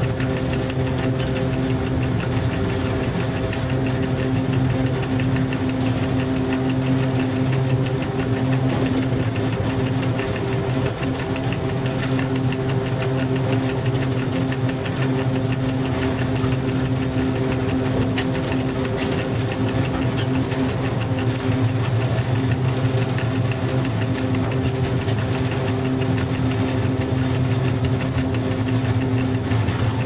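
Cab noise of an FS E.636 electric locomotive under way: a steady, unchanging hum from the locomotive's electrical machinery over the running noise of the wheels on the rails.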